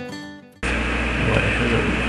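Strummed acoustic guitar music fading out, then cut off about half a second in by a sudden switch to a webcam microphone's steady low hum and hiss.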